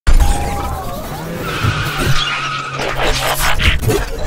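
Sci-fi action sound effects: a sudden loud blast at the start, then a noisy screeching rush with whining tones over it.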